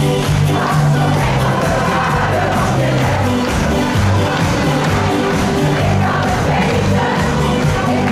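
A choir singing an upbeat song over accompaniment with a steady beat and a moving bass line, loud and unbroken.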